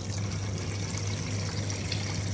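Water-based brine poured in a steady stream from a measuring jug into a stainless steel bowl, splashing and trickling into the liquid already in the bowl, over a steady low hum.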